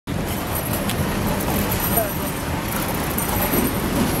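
Steady street traffic noise, with a tram drawing up on the rails near the end, and a few short squeaks.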